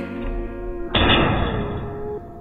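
Background music, with a sudden loud thud about a second in that dies away over about a second: an arrow striking a ramp as it glances off.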